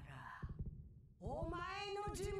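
Japanese anime dialogue: a woman's high, strained voice beginning about a second in after a short pause, drawn out and bending in pitch, as the villain delivers a threat.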